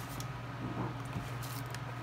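Faint rustling and light handling of packaged items inside a cardboard box, with a few soft brushes, over a steady low hum.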